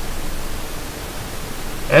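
Steady hiss of the recording's background noise, with nothing else in it. A man's voice begins at the very end.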